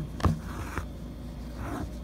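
Embroidery thread drawn through cotton fabric stretched in a hoop, heard as two brief soft rustles as the stitch is pulled. A sharp click comes about a quarter second in.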